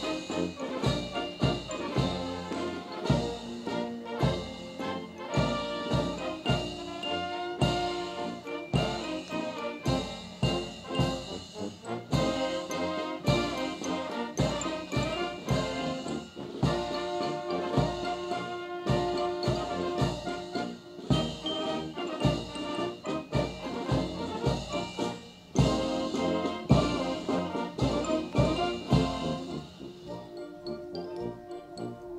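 Military band playing a march: brass carrying the tune over a steady bass drum beat about two strokes a second.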